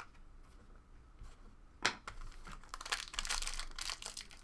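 Foil wrapper of a Panini Chronicles basketball card pack crinkling as it is picked up and torn open. It starts with one sharp crackle about two seconds in, then crinkles steadily.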